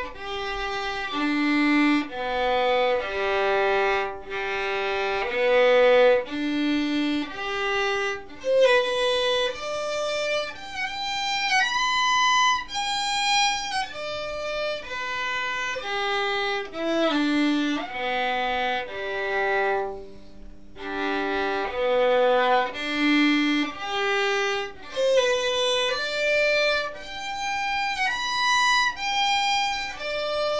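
Solo violin practising G major broken chords (arpeggios) in first position, one bowed note at a time, each about half a second to a second long. The same up-and-down figure is repeated as a drill, with a brief break about two-thirds of the way through.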